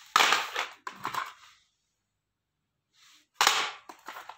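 Plastic audio cassette cases clacking against each other and the tiled floor as they are handled and set down. There are three short clattering bursts, two close together near the start and one near the end.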